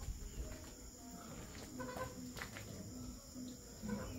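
Faint animal calls: a few short cries about one and two seconds in, over low background noise.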